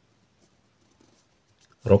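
Pen writing on a paper workbook page, faint scratching strokes. A man's voice starts near the end.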